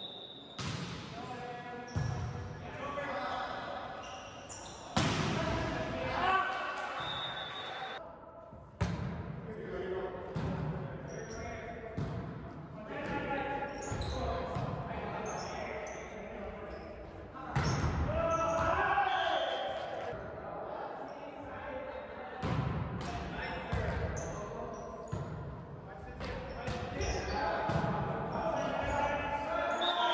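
Indoor volleyball rally: the ball is struck by hands and arms and lands with repeated sharp smacks and thuds, echoing in a large gymnasium, while players call out to each other.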